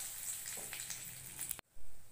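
Curry leaves frying in hot oil in a metal kadai: a steady sizzle with scattered crackles. The sound cuts out abruptly near the end, then a short, louder burst follows.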